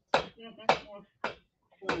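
Four sharp knocks, a little over half a second apart, from hands working at a kitchen counter, with brief bits of voice between them.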